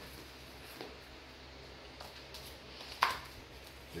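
Faint room noise, then a single sharp click about three seconds in as a short piece of luxury vinyl plank is set into place against the end of the row.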